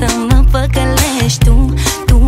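Pop song playing: a sung female vocal line over a heavy, pulsing bass beat.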